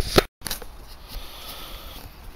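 Two sharp clicks of the camera being handled, then an abrupt cut to a faint, steady background hiss.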